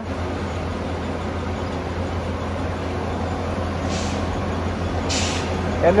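Diesel engine of a barge-unloading material handler with a clamshell grab, running with a steady low drone. Two short hisses come about four and five seconds in.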